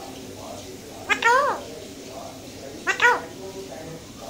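Alexandrine parakeet giving two short calls about two seconds apart, each rising then falling in pitch.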